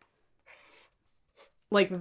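Pen drawing on a paper notepad: a faint scratch lasting about a third of a second, about half a second in, then a tiny tick, before a woman's voice resumes.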